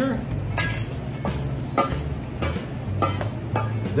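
A metal spoon scraping and clinking against a stainless steel mixing bowl as fried Brussels sprouts are tossed in vinaigrette, about six strokes at roughly half-second intervals.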